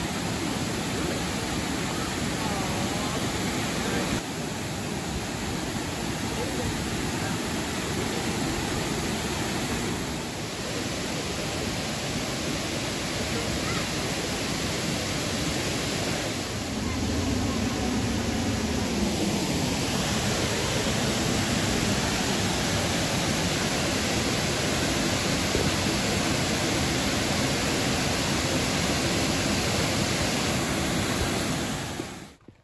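Steady rush of Hooker Falls, a wide, low waterfall pouring over a rock ledge into a pool, growing a little louder about halfway through. Faint voices of people swimming and wading in the pool are mixed into the water noise.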